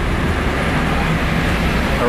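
Steady low rumble of a double-decker tour bus and street traffic, heard from the bus's open top deck.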